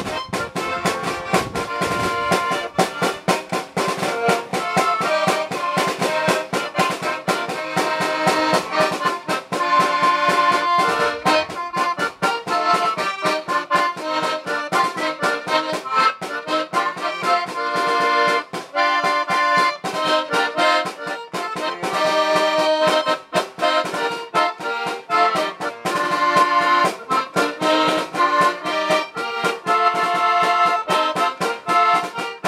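Paolo Soprani button accordion playing a lively polka, with a snare drum keeping a steady beat.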